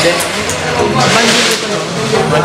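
A man laughing and voices over background music.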